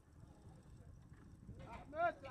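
Faint outdoor background noise, then people's voices calling out near the end, loudest at the very end.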